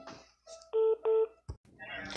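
Two short telephone keypad (DTMF) beeps on the phone line, back to back, each about a quarter second long, followed by a brief click.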